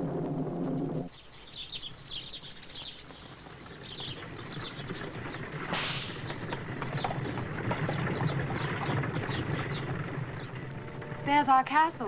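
Soundtrack music holding a sustained chord cuts off about a second in. Then birds chirp over the low, steady rumble of a horse-drawn carriage on the move. Near the end comes a brief loud call with quavering pitch.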